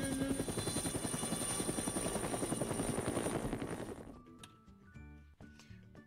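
Helicopter rotor sound effect, a fast, steady chopping that fades out about four seconds in. Soft background music remains after it.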